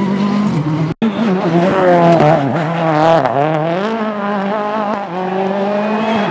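Rally car engines under hard driving, the revs rising and falling with throttle lifts and gear changes. There is a brief gap in the sound about a second in.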